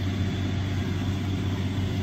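Septic vacuum pump truck running with a steady low hum.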